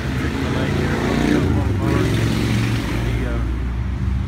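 Car engine running as a vehicle moves slowly past close by, a low rumble that grows louder through the second half.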